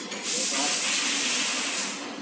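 A loud steady hiss that starts shortly in and fades just before the end.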